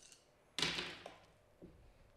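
Dice thrown onto a gaming table: a sudden clatter about half a second in that dies away within half a second, then a faint knock near the end.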